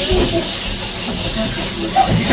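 Students in a classroom talking over one another, with no single clear voice, over a steady hiss.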